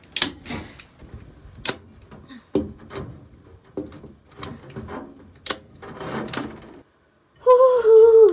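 Manual staple gun firing staples through wire hardware cloth into wooden framing: several sharp clacks at irregular intervals, with the mesh scraping and rattling between shots. Near the end comes a short, loud sound with a falling pitch.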